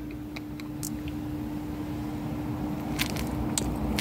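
A steady low hum with a low rumble under it, and a few small clicks, the two sharpest about three seconds in.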